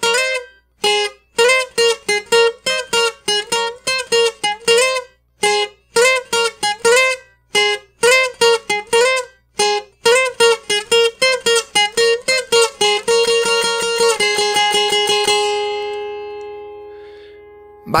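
Twelve-string acoustic guitar (an Oscar Schmidt OD312CE docerola) played slowly with a pick: a requinto melody in two-note double stops on the top string pairs, sliding between frets. Near the end it goes into quick repeated picking on one pair of notes, and the last notes are left to ring and fade out.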